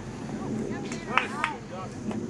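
Distant shouts from people around a baseball field, a few short calls over steady outdoor background noise, loudest about a second in.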